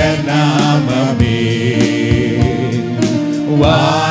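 A man singing a Tamil worship song into a microphone over accompanying music with a steady beat.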